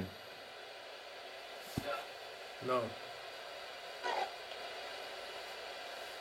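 Quiet room tone with a steady faint hiss, broken by a few short, quiet spoken words. There is a single brief low thump just before two seconds in.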